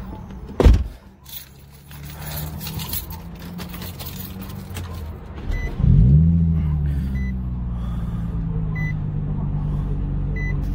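Car engine heard from inside the cabin. A sharp thump comes about half a second in. About five and a half seconds in the engine note rises as the car pulls away, then settles into a steady drone.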